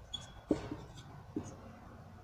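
Marker pen writing on a board: a few short, faint scratchy strokes.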